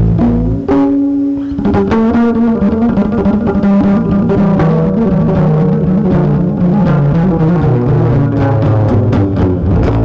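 Live jazz: a double bass played pizzicato, with a drum kit behind it. About a second in a single note is held briefly, then the bass goes on with busy runs of plucked notes.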